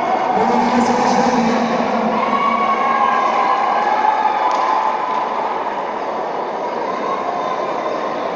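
Crowd in a packed sports hall, a dense, steady mix of many voices shouting and cheering as the winner is declared, with one long, high held shout about two seconds in.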